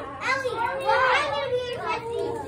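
Several young children's voices at once, chattering and calling out over each other.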